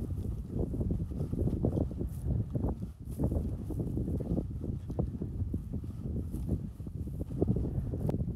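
Footsteps on sandy ground and brushing through dry sagebrush, uneven in pace, with wind on the microphone.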